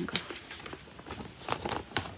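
Handling noise from a knitted piece on straight knitting needles being moved about: a few light clicks and soft rustling.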